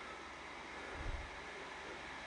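Faint steady hiss, with a soft low bump about a second in.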